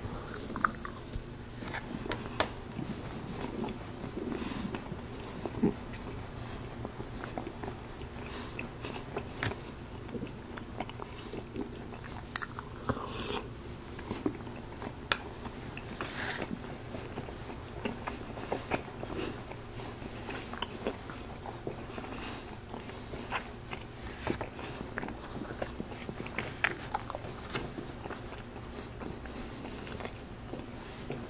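Close-miked chewing and biting of a Philly cheesesteak skillet, with many irregular wet mouth clicks and smacks over a steady low hum.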